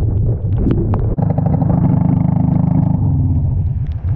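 Honda Shadow 750 Aero's V-twin engine running on the road, its note swelling strongly for about two seconds in the middle and then easing off. Wind rush and scattered sharp ticks of raindrops on the camera run throughout.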